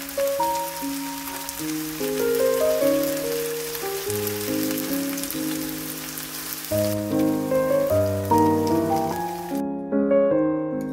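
Marinated chicken pieces sizzling in hot oil in a frying pan, a steady sizzle that cuts off suddenly near the end, under background music.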